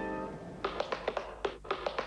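Music fades out, then a quick, uneven run of sharp taps on computer keyboard keys.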